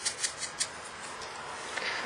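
An ink sponge dabbing and rubbing against a small punched cardstock bird. There are a few short strokes in the first half-second, then a faint rustle of paper being handled.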